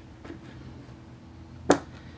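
Quiet room tone with a single sharp click near the end.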